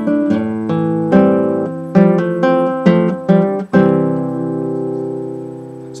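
Nylon-string classical guitar fingerpicking a C chord pattern, a note or pair of notes plucked about twice a second, then a final chord left to ring and fade over the last two seconds.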